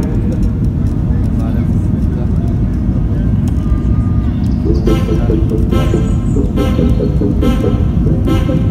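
Steady low rumble of jet engines and airflow heard inside the cabin of a Ryanair Boeing 737 descending with its flaps extended. About five seconds in, music begins with a repeating rhythmic figure over the rumble.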